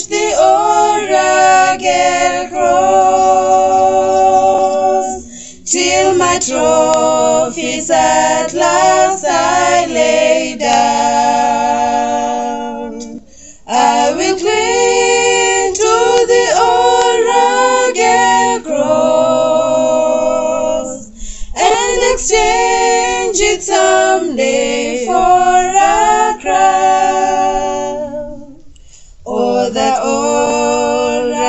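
Three women singing a hymn unaccompanied, in phrases a few seconds long with short breaks for breath between them.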